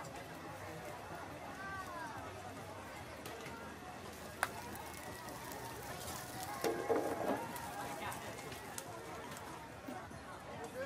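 Background chatter of many voices at a busy street-food market, with no one voice standing out. There is a sharp click about four and a half seconds in and a short louder clatter around seven seconds.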